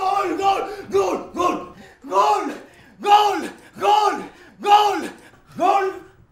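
Football fans shouting a rhythmic victory chant after a goal. About nine loud, arching calls each rise and fall in pitch, quick at first and then roughly one a second.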